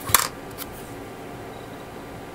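A brief crackling rustle of masking tape being handled and pressed onto a small plastic model part, with a small click, then only faint steady room hiss.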